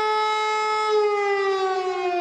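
Civil-defence air-raid siren sounding its warning tone, steady at first and then sliding slowly down in pitch from about a second in.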